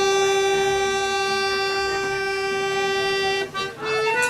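Button accordion and tin whistle playing a slow air, holding one long note for about three and a half seconds. The note breaks off briefly and the next phrase begins near the end.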